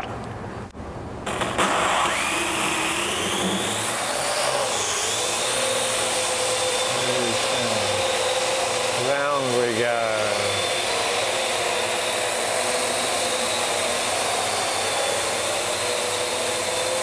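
AR.Drone quadcopter's four small electric motors and propellers starting about a second and a half in, their whine rising in pitch as it lifts off, then a steady buzzing whir while it hovers.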